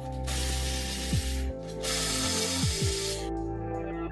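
Milwaukee M12 cordless 1/4-inch ratchet running in two bursts of about a second each, a hissing whir, as it undoes a fastener under the car. Background electronic music with a steady beat plays throughout.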